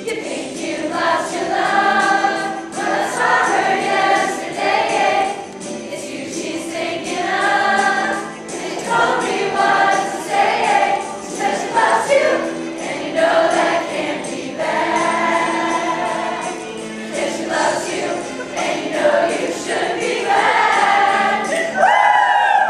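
Large mixed high school choir singing a pop song, many voices together in a continuous run of sung phrases.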